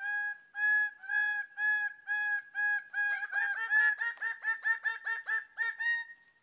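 Male bird-of-paradise calling: a series of loud, clear pitched notes, about two a second at first, then quickening to about four a second halfway through and rising slightly in pitch.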